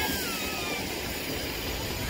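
A steady rushing noise with no clear rhythm, and a faint falling whistle-like tone in the first second.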